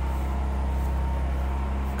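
A steady low mechanical hum of a motor running, unchanging, with a faint thin whine above it.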